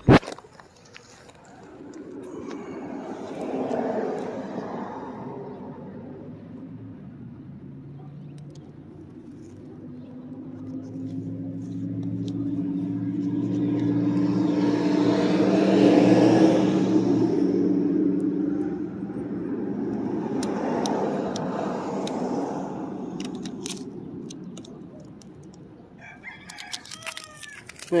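Vehicles passing by: three long swells of engine and road noise with a low engine hum, the loudest peaking about halfway through, followed by a few handling clicks near the end.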